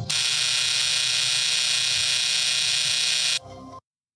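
Game-show wrong-answer buzzer sound effect: one long, loud buzz of a bit over three seconds that cuts off suddenly, marking the guess as incorrect.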